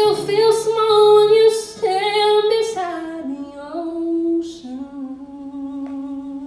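A woman singing solo into a microphone: a slow line of long held notes stepping down in pitch, settling about three-quarters of the way in onto one long low note sung with vibrato.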